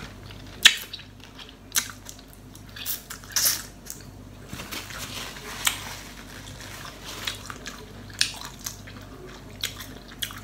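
Close-up eating sounds of a person eating seafood instant noodle soup: a string of short wet smacks and slurps, one every second or so.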